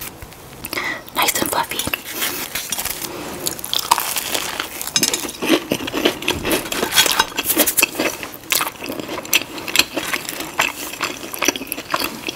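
Close-miked chewing of a soft biscuit: wet, clicking mouth sounds, dense and continuous from about a second in.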